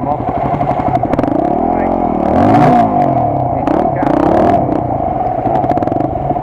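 Dirt bike engines running, with one revved up and back down in the middle while another's pitch moves the other way. There is some clatter a little later.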